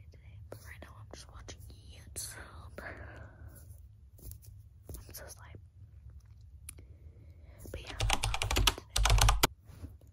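Soft whispering with scattered clicks of long fingernails tapping on the phone right by its microphone. Near the end comes a loud burst of rapid tapping and handling thumps lasting about a second and a half.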